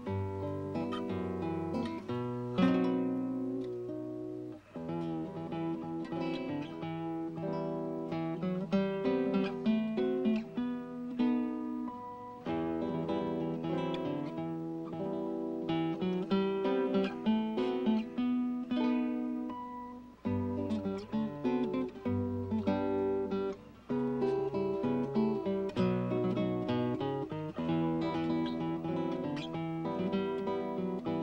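Solo nylon-string classical guitar played fingerstyle: a steady run of plucked melody notes over ringing bass notes, with a few short pauses between phrases.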